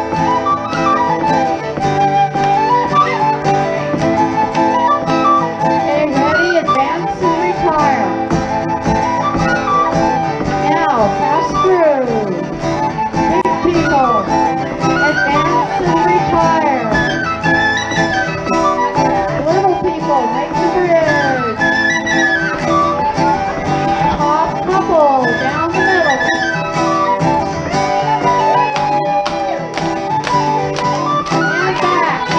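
Irish jig music played for ceili dancing: a continuous, lively jig melody over a steady accompaniment.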